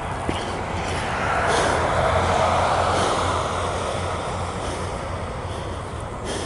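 A motor vehicle driving past on the road, its engine and tyre noise swelling about a second in and fading away over the next few seconds.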